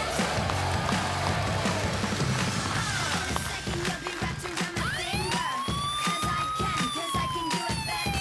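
Upbeat studio entrance music with a steady beat. About five seconds in, a synth tone sweeps up, holds, and slides slowly back down.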